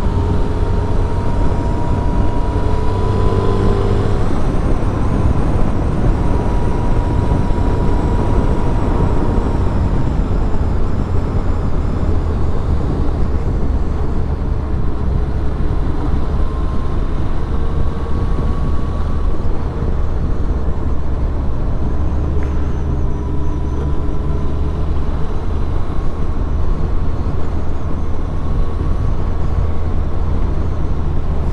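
1999 Suzuki Hayabusa's inline-four engine running at a steady cruise on the road, heard from on the bike with a constant rush of road and wind noise. The level stays even, with only slight rises and falls in engine pitch.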